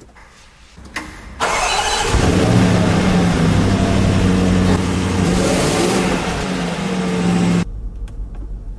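Land Rover Defender's supercharged 5.0-litre V8 started by push button: a click and a short crank about a second in, then it fires with a loud flare and settles into a fast idle. The revs swell briefly past the middle, and the sound cuts off suddenly near the end.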